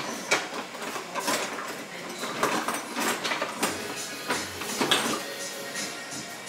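Irregular clatter and clicks of kitchen utensils being rummaged in a drawer, over faint background music.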